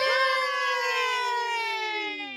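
A single long howl that starts sharply, falls slowly and smoothly in pitch, and fades out near the end.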